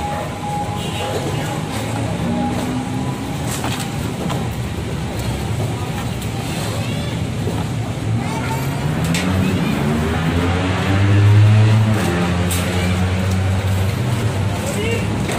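Road traffic, with a motor vehicle's engine rising in pitch as it speeds up about eight to eleven seconds in and staying loudest for a moment just after. Background voices and a few sharp knocks of wooden debris being handled come through it.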